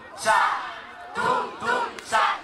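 A group of children shouting together, three loud shouts in quick succession.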